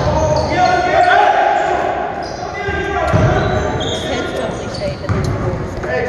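Basketball bouncing on a hardwood gym floor during play, with voices of players and spectators echoing through the large gym.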